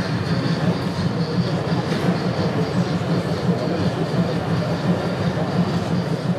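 HO-scale model steam tram running along the layout's track, a steady rolling rumble.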